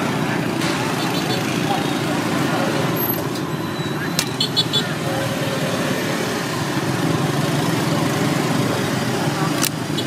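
Steady rumble of street traffic with background voices, and a few sharp clicks about four seconds in and again near the end.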